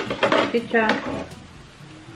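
A voice says "it's good" over light clicks of metal tongs against the plate of a tabletop raclette grill, with a sharp click at the start.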